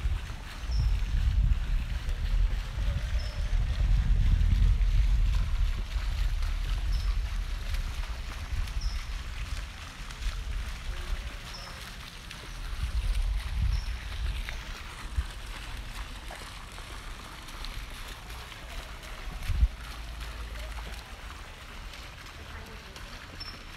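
Wind buffeting a phone's microphone: low rumbling gusts that swell and fade, strongest in the first few seconds and again about halfway through, with one short thump near the end.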